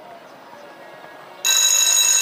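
Loud electronic ringing signal from the show-jumping arena's timing system, starting suddenly about one and a half seconds in and held steadily. It marks the horse crossing the finish and the clock stopping.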